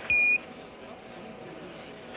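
A single Quindar tone, the short high beep that marks the end of a Mission Control capcom transmission on the Apollo air-to-ground radio loop, lasting about a quarter second. It is followed by steady hiss on the open radio channel.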